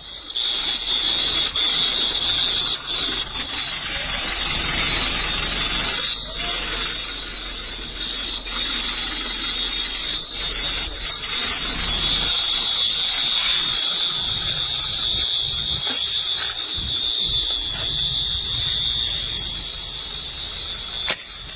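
A steady high-pitched electronic alarm tone sounds continuously over a loud, rushing background noise.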